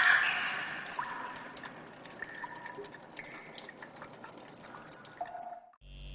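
Water dripping in irregular ticks and plinks, some with a short ringing tone. It fades after a louder burst at the start, and near the end it cuts off abruptly into a steady low hum.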